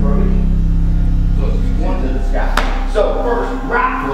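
A loud, steady low hum that fades away about two and a half seconds in, with indistinct voices over it.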